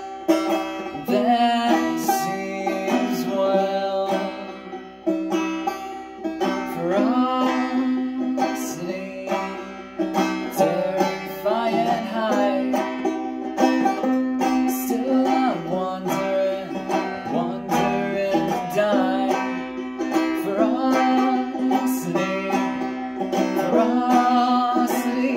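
Banjo picked in a steady run of plucked notes and chords, with a singing voice over it at times.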